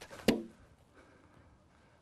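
Two brief knocks within the first half second, then near silence.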